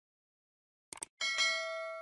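Subscribe-button animation sound effect: a quick double mouse click about a second in, then a bell ding that rings on and fades.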